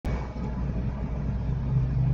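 A steady low background rumble with no distinct events.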